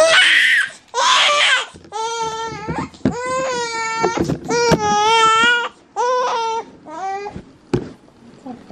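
One-month-old baby crying in a string of about seven wails. The first two are harsh and hoarse, the rest clearer and steady in pitch, growing shorter near the end.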